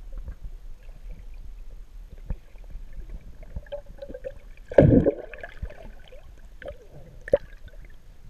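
Muffled underwater sound through a camera's waterproof housing: water moving around the camera, with scattered sharp clicks and one loud, low rush of water about five seconds in.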